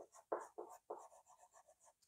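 Green Derwent XL graphite block rubbed back and forth on a paper page: a few scratchy strokes, the strongest in the first second, then lighter, quicker strokes.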